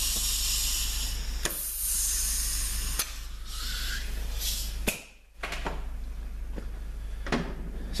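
Compressed air hissing from an air nozzle for about three seconds, then a softer hiss with a few sharp clicks. The hiss drops out briefly about five seconds in. This is shop air of the kind used to air-check an automatic transmission's clutch passages.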